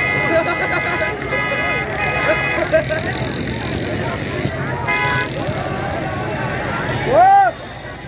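Vehicle horns blaring in several held blasts over crowd chatter and traffic noise, with one more short horn blast about five seconds in. Near the end a single loud shout rises and falls in pitch.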